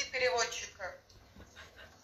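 A voice speaking for about the first second, then it stops and only low room tone remains.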